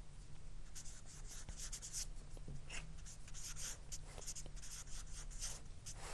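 Whiteboard marker writing on a whiteboard: a run of faint, quick scratching strokes as words are written out.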